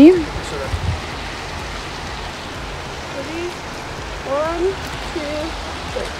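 Steady rush of a shallow river running over rocks, with a couple of brief faint voices in the background a few seconds in.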